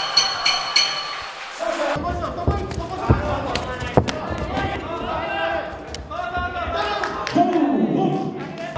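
A ring bell struck rapidly, about four times a second, signalling the fight is stopped. Then, under commentary, kicks landing on a fighter's leg with sharp slaps, the loudest about four seconds in.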